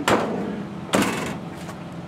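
The rear doors of a GMC Savana cargo van being slammed shut one after the other: two heavy bangs about a second apart.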